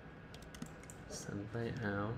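A few scattered computer keyboard key clicks, then a low man's voice sounding from about one and a half seconds in.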